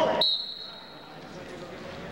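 Referee's whistle blown once to start a wrestling bout: a single high blast with a sudden start that fades away within about a second and a half. The hall's background noise drops away under it.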